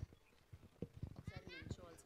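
Faint, irregular low knocks and thumps, with a faint voice in the second half.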